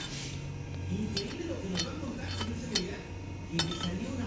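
A metal gauge rod clinking against the aluminium valve seat and bowl of an LS cylinder head as it is worked through the port to check the bowl cut: about five sharp, irregular clinks over a steady low hum.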